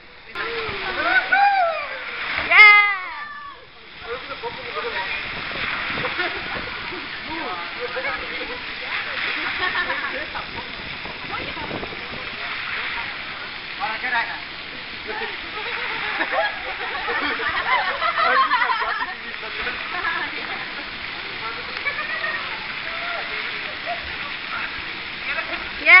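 Steady rush of water running and splashing down an open water slide, with voices of other people scattered through it. A voice is heard in the first few seconds, before the water sound settles.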